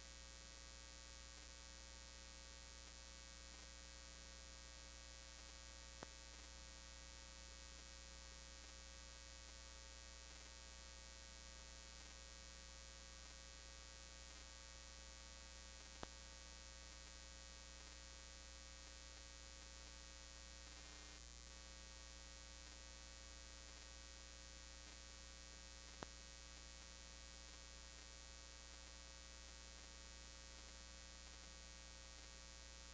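Near silence: a steady low electrical hum with overtones, with three faint clicks about ten seconds apart.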